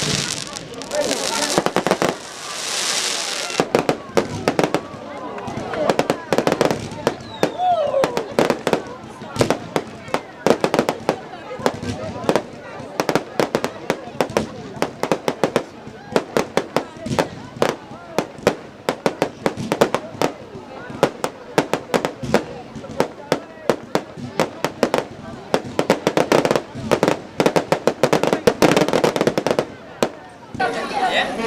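Fireworks display: aerial shells bursting in a fast, irregular series of bangs and cracks. There is a long hissing rush about one to three seconds in, and a thick volley of bangs near the end.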